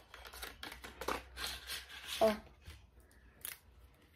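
Pastel-coloured plastic pens being taken out and handled: a run of rustles and small plastic clicks through the first two seconds, then a few faint clicks.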